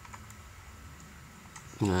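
A few faint computer keyboard keystrokes and clicks, as a login password is typed and submitted.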